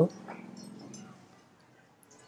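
A faint, drawn-out low pitched sound, like a soft voice or whine, fading away within about a second, then near silence.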